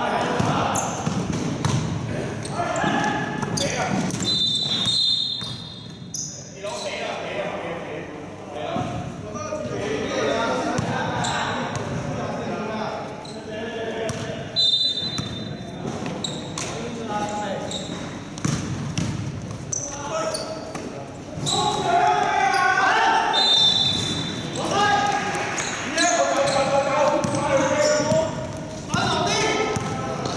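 Basketball bouncing on an indoor court amid players' shouted calls, echoing in a large sports hall. A few brief high-pitched squeaks come through about 4, 15 and 24 seconds in.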